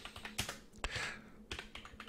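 Computer keyboard typing: a handful of faint, irregularly spaced keystrokes as a short line of text is entered.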